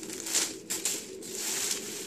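Plastic shopping bags rustling and crinkling as a hand rummages through them. Faint low tones run underneath.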